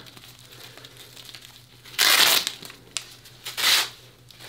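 Hook-and-loop (Velcro) band of a knockoff CAT tourniquet being ripped open, in two short rasping pulls about halfway through and near the end, with a small click between them.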